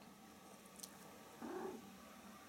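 Near silence: room tone in a small room during a pause in talk, with a faint, brief low sound about one and a half seconds in.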